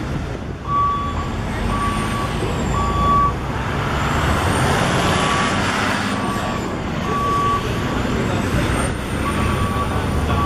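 A truck's reversing alarm sounds short beeps at one steady pitch, roughly once a second, over street traffic. The beeping pauses briefly in the middle as a vehicle passes close by.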